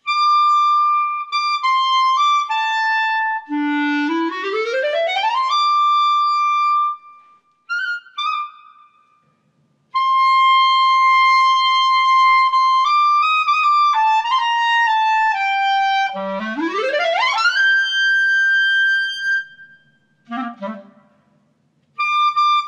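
E-flat clarinet playing solo, unaccompanied: phrases of held and stepping notes. Twice, a fast run sweeps up from the low register to a long high note, with short pauses between phrases.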